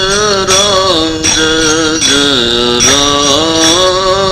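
Devotional chanting: a single voice holding long sustained notes that step down in pitch around the middle and rise again, with light percussion strokes keeping time about every three quarters of a second.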